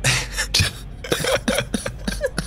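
A person laughing in short, breathy bursts.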